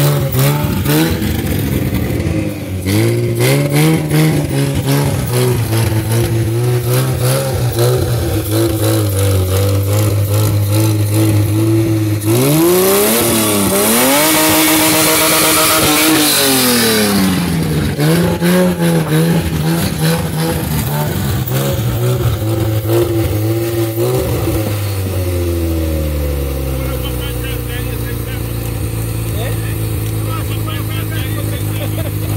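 An old SUV's engine, running with the bonnet open, is revved repeatedly from the driver's seat. It climbs and drops several times, then is held at high revs for a few seconds about halfway through, and comes back down to a steady idle near the end.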